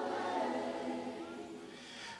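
Choir voices of a recorded worship song fading away at the end of a sung phrase, trailing off into a brief quiet gap before the next line.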